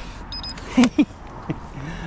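A man laughing in two short bursts, with a brief high beep just before and a small click after.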